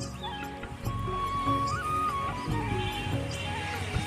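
Background music: a melody of held notes over a steady low beat.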